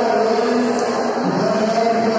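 Long, drawn-out shouted calls in a voice, two held notes of about a second each, over the hubbub of a crowded hall.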